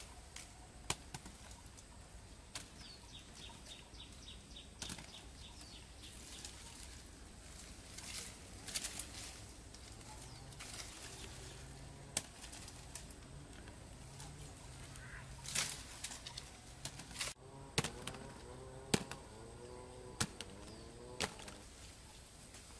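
Leafy citrus branches rustling, with sharp snaps and knocks as fruits are picked by hand and dropped into a plastic basket.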